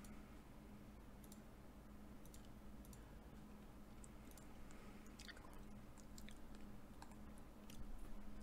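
Near silence: faint, scattered crunchy clicks of someone chewing potato chips, over a low steady hum.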